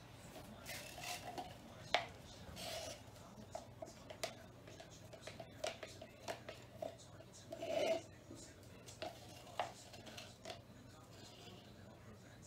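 Small clicks, taps and scrapes of a stirring stick against a plastic cup as leftover paint is scraped out, with a sharper tap about two seconds in and a soft rubbing noise near the end, over a faint steady low hum.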